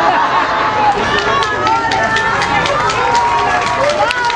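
Audience clapping and calling out, the claps growing thicker from about a second in.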